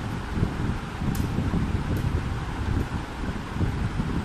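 Moving air buffeting the microphone: a low, uneven rumble, with a faint small click about a second in.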